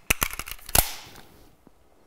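Pistol tactical reload by hand: a quick series of metallic clicks and handling noise as the partly spent magazine is pulled out and a fresh one is slapped into the magazine well, the loudest click about three-quarters of a second in.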